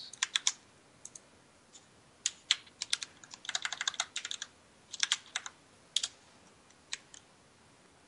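Typing on a computer keyboard: irregular runs of key clicks with short pauses between them, the longest run about two to four and a half seconds in.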